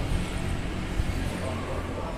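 Steady low rumble of outdoor background noise, with no clear event standing out.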